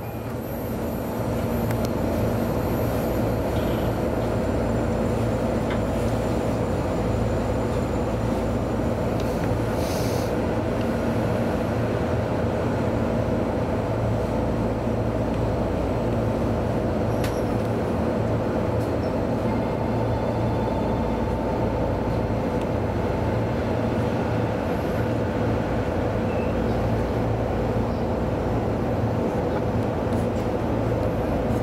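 Steady hum heard in the driving cab of a JR East E233 series electric train standing still, with a few constant tones and no change in level.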